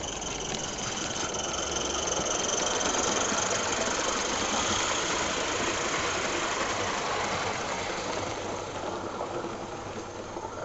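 A small live-steam garden-railway locomotive and its coaches running past with a steady mechanical rattle. It grows louder toward the middle and fades away near the end.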